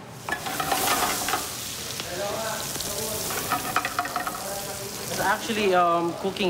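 Chopped onion and red pepper strips sizzling as they fry in a hot metal skillet, a steady hiss that starts suddenly at the outset.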